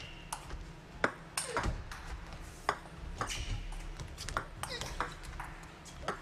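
Table tennis rally: the plastic ball struck back and forth by rubber-faced bats and bouncing on the table, a string of sharp clicks about one to two a second.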